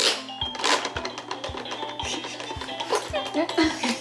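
Electronic toy tune from a baby activity jumper's play tray: short melody notes over a steady beat of about three a second.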